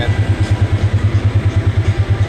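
Polaris side-by-side engine idling, heard from inside the cab: a steady, even low pulse.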